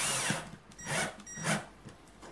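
Cordless drill-driver driving a self-tapping screw into a paintbrush handle: a short run of about half a second, then two brief bursts about a second and a second and a half in.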